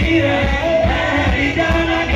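A man singing into a microphone over loud amplified band music with a pulsing bass beat, played through PA speakers.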